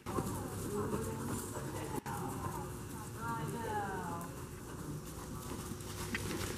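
A horse's hoofbeats on the soft dirt footing of an indoor arena as it goes past under a rider, with a voice talking in the middle.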